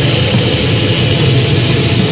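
Black metal music playing loud and dense: a continuous wall of distorted guitar and drums with no break.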